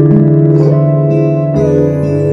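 Instrumental backing music with guitar over held chords, in a break between sung lines; the chord changes twice.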